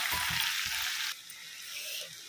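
Drumstick pods and potato pieces sizzling in hot oil in a kadhai, stirred with a spatula, with a few soft knocks. About a second in the sizzle drops suddenly to a quieter level.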